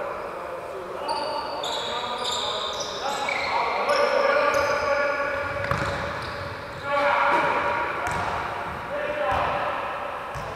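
Indoor futsal game echoing in a sports hall: players' shouts, shoes squeaking on the wooden court, and a couple of thuds of the ball being kicked or bounced after about six seconds.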